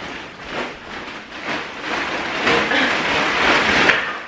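A large plastic bag rustling and crinkling as it is carried close past the microphone and handled on the floor, growing louder near the end.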